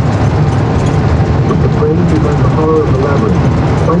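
Steady low drone of road and engine noise inside a car driving on a highway.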